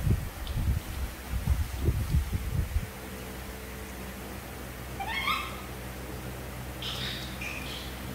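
A baby macaque gives a short squeaky call about five seconds in, then a fainter, higher call near the end. Low, irregular thumps and rustling fill the first few seconds.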